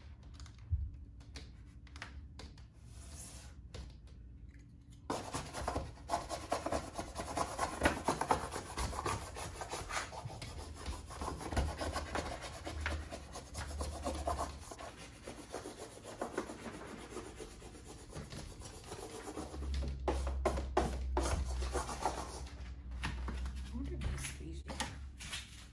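Peel-and-stick door decal being smoothed onto a door with a plastic smoothing tool and hands, heard as scratchy rubbing and scraping in many short strokes. It starts about five seconds in, after quieter handling with a few light taps.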